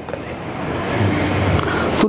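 Motor vehicle noise that grows steadily louder, like traffic going past, with a low engine hum about halfway through.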